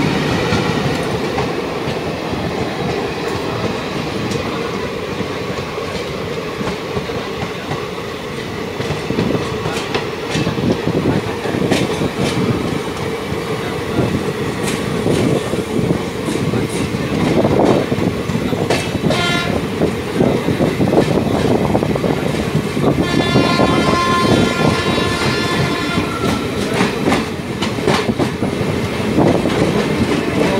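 A diesel-hauled passenger train of ICF coaches passing close by, with a steady rumble and the clickety-clack of its wheels over the rail joints. A train horn sounds briefly about two-thirds of the way through, then again for about three seconds.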